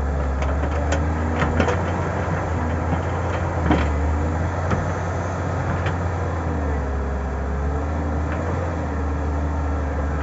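Samsung wheeled excavator's diesel engine running steadily under load as it digs and lifts earth, with scattered short knocks and clicks from the bucket and stones, the sharpest about four seconds in.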